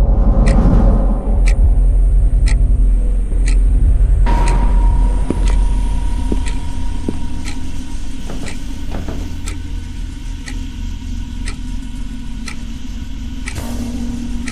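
Suspense soundtrack: a deep, steady drone under a clock-like tick about once a second. A thin, steady high tone joins about four seconds in.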